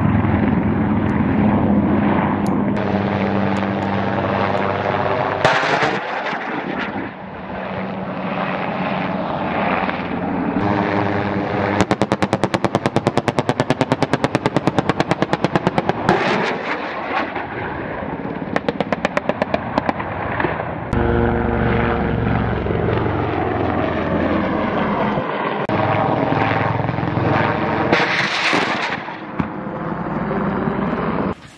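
Marine AH-1Z Viper attack helicopter's rotor and turbine engines passing low overhead, the pitch sweeping as it goes by. Two bursts of rapid automatic gunfire break in: a long one of about four seconds, starting about twelve seconds in, and a shorter one about nineteen seconds in. A rising whine comes near the end.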